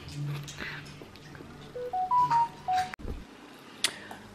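A short electronic chime of about five single pure beeps, stepping up in pitch and then back down, about two seconds in; the sound breaks off sharply just after.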